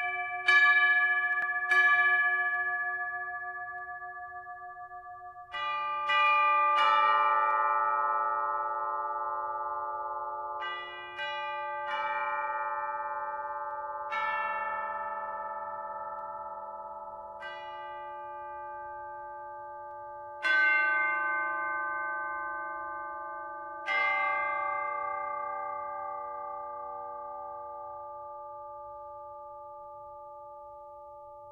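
Tuned bells struck one note at a time in a slow, unmetered sequence, about a dozen strikes a second or several seconds apart. Each note rings on and fades slowly, so the notes overlap into a sustained chord.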